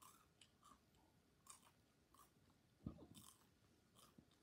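Near silence: room tone with faint scattered clicks and a soft knock about three seconds in.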